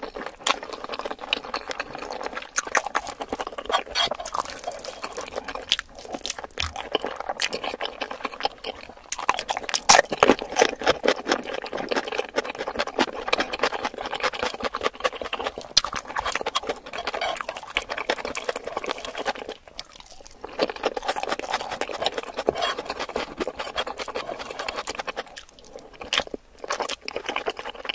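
Close-miked wet chewing of a mouthful of curried rice and chicken feet: a dense run of small sticky mouth clicks, broken by a few short pauses.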